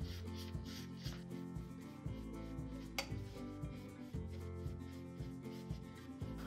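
Bristle paintbrush dry brushing white paint onto a small metal tin: light, repeated rubbing strokes of the brush on the metal, under quiet background music. A single sharp click about halfway through.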